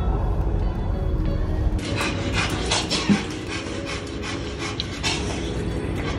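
For about the first two seconds, the low rumble of a Ford Mustang convertible driving with its top down. Then a Pomeranian panting rapidly, about two to three breaths a second, over faint background music.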